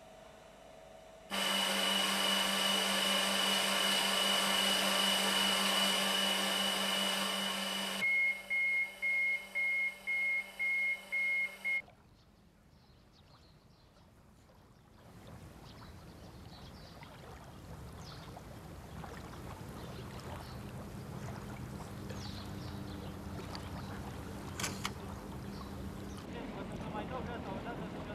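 Laboratory testing equipment running with a loud steady hum and a high whine. It then gives a run of about eight electronic beeps, roughly two a second. After a quiet gap, a soft outdoor wash of water trickling builds slowly.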